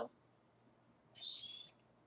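A short high chirp from a small bird, about a second in, made of a few thin whistled tones; the rest is near silence.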